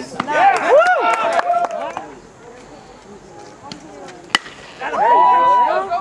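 Shouting voices, then a single sharp ping of a bat hitting a pitched baseball about four seconds in, followed at once by louder shouts and cheering with one long held yell.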